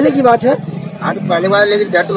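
A man speaking in Hindi.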